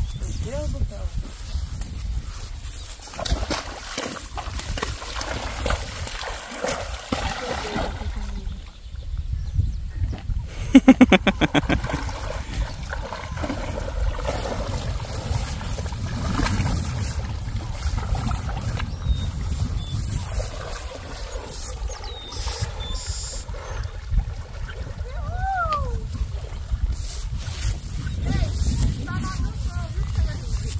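A horse wading through a muddy reservoir into deep water, the water splashing and sloshing around its legs and body. A brief rapid rattle comes about a third of the way in and is the loudest sound.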